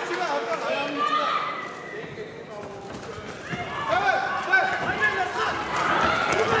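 Voices shouting from the crowd around a kickboxing ring, with a sharp thud of a strike landing about four and a half seconds in.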